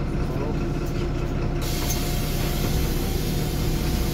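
Inside the cabin of a 1998 MAN NL223 city bus: the MAN D0826 six-cylinder diesel running with a steady low hum. About one and a half seconds in, a sudden hiss of compressed air starts and keeps going.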